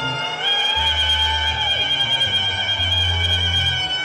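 Live band music: saxophones hold one long, high note from about half a second in, over a repeating bass line.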